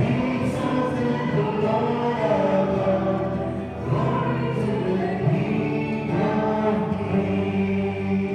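Church choir singing a hymn in long, held notes, with a short break between phrases about four seconds in.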